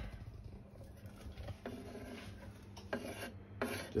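Kitchen knife blade scraping chopped vegetables across a wooden cutting board into a stainless steel saucepan, a soft rasping scrape repeated a few times.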